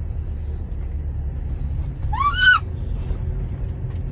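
Steady low rumble of a van's cabin. About two seconds in comes one short, high-pitched cry that rises and then falls, the loudest sound here.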